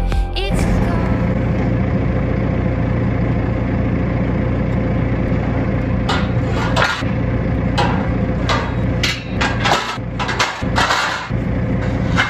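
Telehandler engine running steadily with a constant hum, and from about six seconds in a run of metal clanks and rattles from steel livestock gates being handled on its forks.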